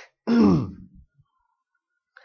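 A man coughs once, a short voiced cough that clears his throat, falling in pitch, about a quarter second in.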